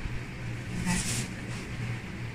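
Steady low hum, as of a running machine or appliance, throughout, with a woman saying one short word about a second in.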